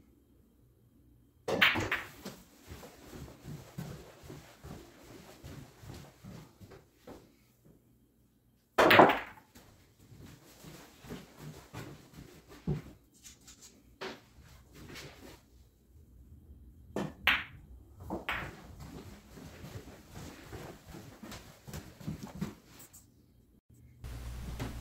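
Pool shots: sharp clicks of the cue tip on the cue ball and of ball striking ball, the loudest about nine seconds in, with balls rolling across the cloth and knocking into the pockets between the strikes.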